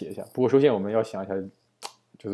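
A man's voice speaking, with one short sharp click near the end.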